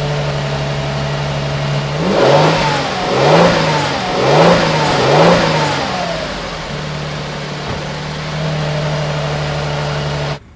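Lexus LX 600's twin-turbo V6 idling steadily, then revved four times in quick succession, each rev about a second long and rising and falling in pitch, before settling back to idle.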